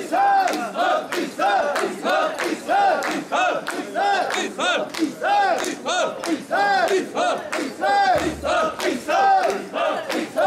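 Mikoshi bearers chanting in unison as they carry the portable shrine: a short rhythmic shout from many voices, repeated about three times every two seconds and alternating strong and weak beats.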